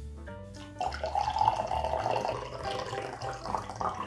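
Coffee being poured from a stainless steel thermal carafe into a cup: a steady stream of liquid that starts about a second in and keeps running.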